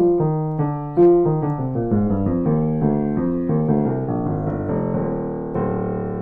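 Blüthner Style VIII 190 cm grand piano from 1898, with aliquot scaling, being played by hand: a flowing passage of single notes and chords, with a fuller chord struck shortly before the end and left ringing.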